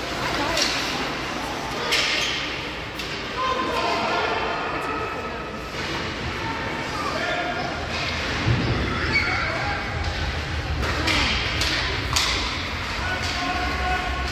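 Ice hockey play in a reverberant rink: several sharp knocks and thuds from puck, sticks and boards, with voices calling out over the game.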